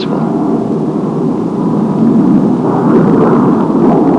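Jet fighter engine noise: a steady, deep rushing rumble that swells a little about two seconds in.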